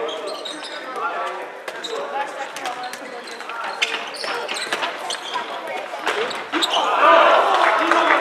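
A handball bouncing repeatedly on a wooden sports-hall floor during play, with players' voices and shouts ringing in a large hall. The voices grow louder about six and a half seconds in.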